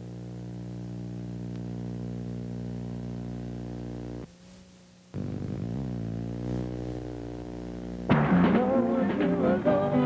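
Music: a steady held chord that breaks off about four seconds in, then held notes bending in pitch, and a louder, livelier harmonica tune from about eight seconds in.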